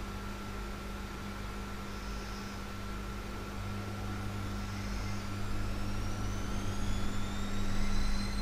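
Faint engine whine that rises slowly in pitch and grows louder through the second half, over a steady low hum.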